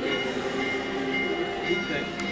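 Procession crowd singing a religious hymn together in the street, many voices holding long notes.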